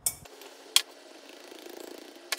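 A silicone spatula scraping and pushing flour through a stainless steel mesh sieve while sifting, a steady rough rasping that grows a little in the second half, with a sharp tick about three quarters of a second in.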